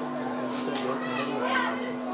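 Many people chattering at once, children's voices among them, over a steady low hum.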